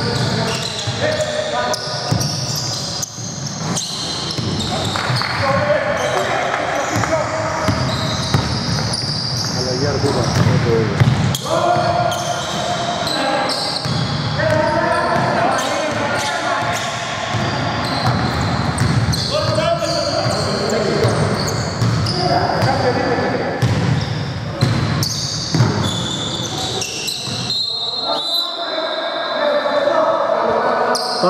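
A basketball bouncing on a hardwood gym floor during play, with players' shouts and calls ringing in a large, echoing hall.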